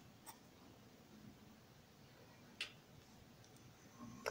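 Near silence with a pencil on drawing paper: two faint, brief ticks, one just after the start and one about two and a half seconds in.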